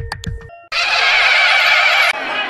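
A few quick sound-effect clicks with a short tone, then a loud horse whinny lasting about a second and a half, starting under a second in.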